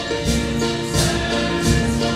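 Voices singing a gospel hymn together with instrumental accompaniment and a steady beat, about two strokes a second.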